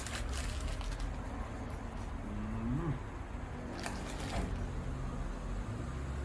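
A man eating a crunchy toasted sandwich: short crackles of biting and chewing at the start and about four seconds in, and a brief hummed "mm" near the middle, over a steady low hum.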